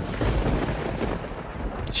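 A dramatic boom sound effect: a thunder-like rumble that comes in suddenly and rumbles on.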